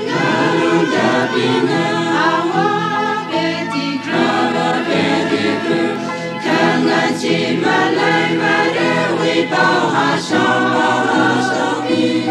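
A choir singing a gospel song in several-part harmony over steady low sustained tones, with short breaks between phrases.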